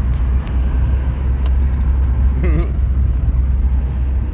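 Volkswagen Santana's engine running with road rumble, heard from inside the cabin as a steady low drone.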